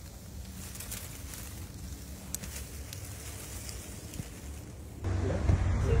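Dry leaf litter and palm fronds crackling faintly now and then over a steady low rumble as a carpet python is let out of a bag onto the ground. About five seconds in, the sound cuts to a louder background and a man starts to speak.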